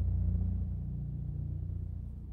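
A steady low hum with nothing else over it.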